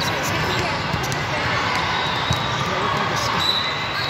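A few sharp thuds of a volleyball being bounced on the court floor and served, over a steady murmur of voices in a large, echoing hall.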